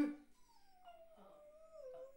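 A young beagle giving a soft, whining howl that slides slowly down in pitch.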